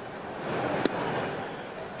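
Steady ballpark crowd noise with one sharp crack a little under a second in: the pitched baseball arriving at the plate.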